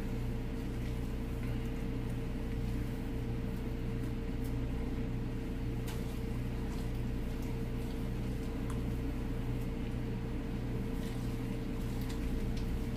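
A steady mechanical hum with a faint constant whine, unchanging throughout, with a few faint ticks.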